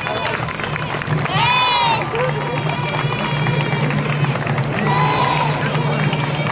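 Street parade dance with music and a steady low drone. A high-pitched call rises and falls about one and a half seconds in and again about five seconds in, over crowd noise.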